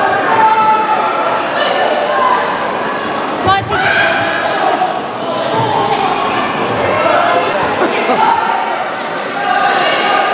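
Coaches and spectators shouting over one another in a large, echoing gym hall, with one sharp thump about three and a half seconds in.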